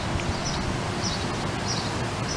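Wind buffeting the microphone outdoors, a steady rushing rumble, with a bird calling over and over in short high notes about two or three times a second.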